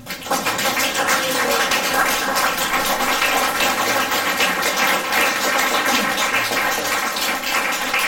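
Audience applause: many hands clapping, rising quickly right at the start and then holding loud and steady.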